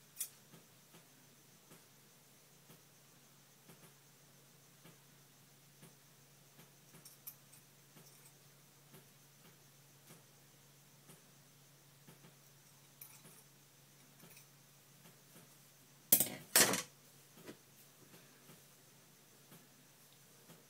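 Pair of scissors clattering onto a hard surface: two sharp metallic knocks close together about sixteen seconds in, the loudest sound here, against a quiet room with faint small handling ticks.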